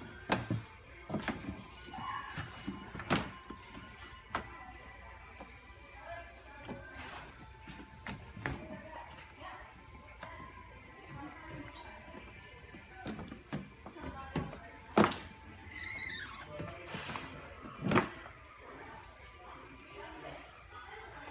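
Plastic doors and bodies of children's ride-on toy cars knocking and clacking as a small child handles them: several sharp knocks in the first few seconds and two louder ones later on. Background music and faint voices run underneath.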